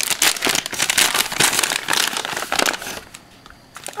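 Paper gift bag and clear plastic wrapping crinkling and rustling as they are unwrapped and opened by hand, stopping about three seconds in.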